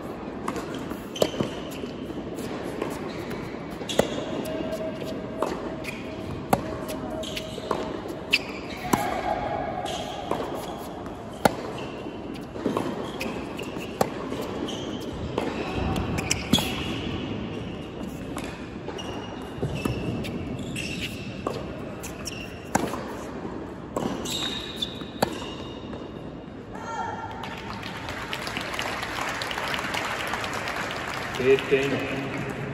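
Tennis rally on a hard court: sharp racket strikes on the ball about every two to three seconds, with ball bounces between them, echoing in a large indoor arena. A noisy burst of applause rises near the end as the point finishes.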